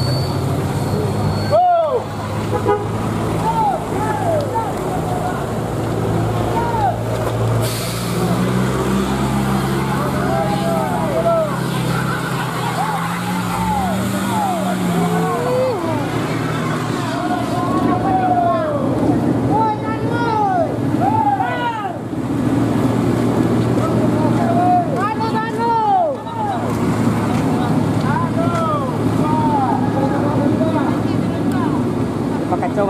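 Heavy vehicle engines labouring up a steep grade, the engine note climbing in pitch for several seconds midway, while people call out over it.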